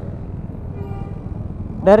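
Motorcycle engines idling in a low, steady rumble, with a faint distant voice about a second in and a man starting to speak near the end.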